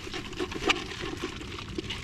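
Water dripping into a shallow tide pool: a few faint drops and ticks over a soft, steady hiss.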